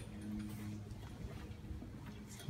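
Faint steady low hum, with a single sharp click right at the start.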